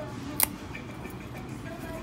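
Disposable wooden chopsticks (waribashi) being snapped apart, a single sharp crack about half a second in.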